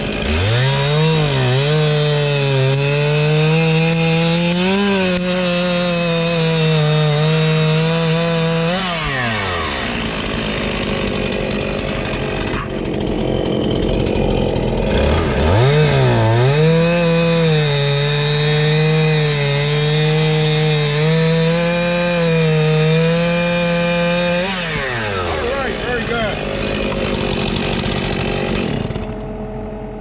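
Two-stroke chainsaw cutting through a log, twice. Each time the engine revs up to a steady high-pitched full-throttle run for about nine seconds, then drops back to idle between cuts.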